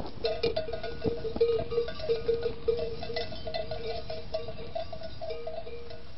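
Many sheep bells on a moving flock clanking and ringing irregularly, over a steady background hiss.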